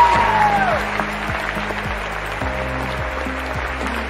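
Audience applauding, with a falling whistle in the first second, as grand piano chords play underneath.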